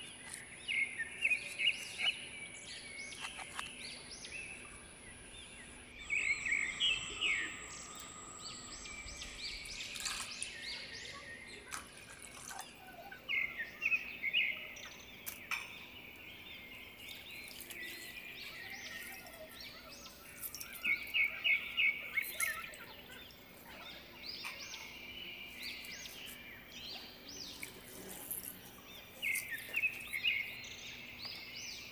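A small bird chirping in groups of quick, rapid chirps that come back every several seconds, over a steady faint background hiss.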